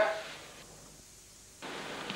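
Faint steady hiss of a home-video soundtrack. It fades almost away for about a second, then returns abruptly near the end when the shot cuts.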